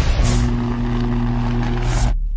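Intro logo sound effect: a loud, steady, low droning hum under a hissing rush. A bright whoosh comes shortly after the start and another swells near the end.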